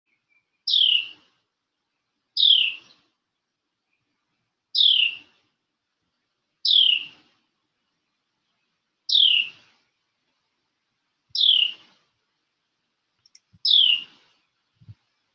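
A songbird calling: a single short, high note that slides downward, repeated seven times at intervals of about two seconds.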